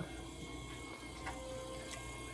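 Electric potter's wheel running with a low, steady hum while wet clay is pulled up on it.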